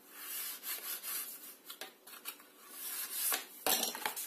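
A small wooden ruler rubbed back and forth along taped card edges, pressing the tape firmly down: a series of dry scraping strokes, with a sharp knock near the end.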